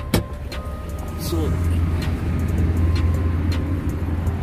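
A sharp click just after the start as the Mitsubishi Pajero's door is unlatched, then a steady low rumble that grows louder from about a second in as the door swings open.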